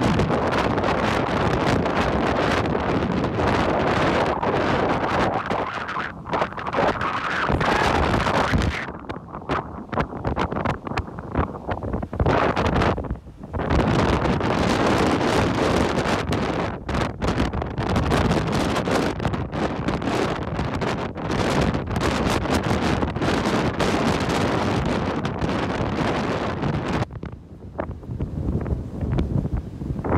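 Strong gusty squall wind from a hurricane's outer band buffeting the microphone, with surf breaking underneath. The gusts let up in a few brief lulls.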